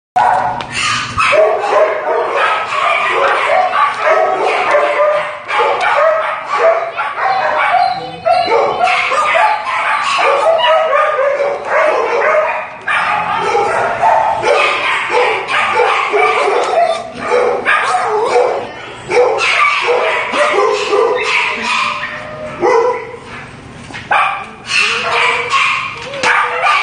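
Several shelter dogs barking in their kennels, the barks overlapping with hardly a break.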